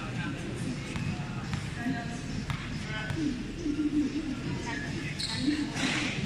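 A basketball bouncing on a hard concrete court during a game: several separate knocks, with brief high squeaks from players' shoes and a steady chatter of spectators' voices underneath.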